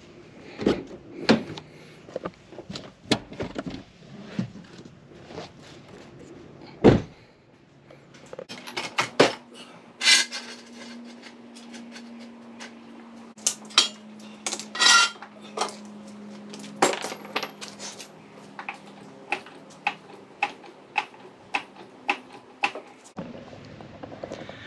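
Irregular metal clinks and knocks of hand tools and car parts being handled while working under a car, with one louder knock about seven seconds in.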